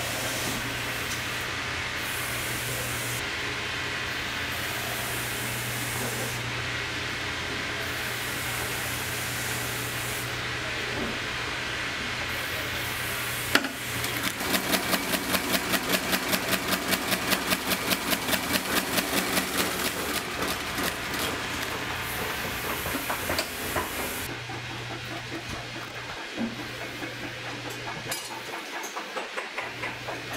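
Shop outsole stitching machine: a long steady hiss with a low hum, then a sharp click about halfway through. The machine then runs in rapid, even strokes, about four to five a second, as it stitches a boot's sole, and tails off a few seconds later.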